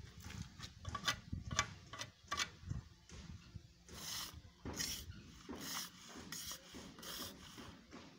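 Steel trowel scraping and smoothing wet cement mortar: a quick run of short scraping strokes over the first few seconds, then a few longer, spaced scrapes.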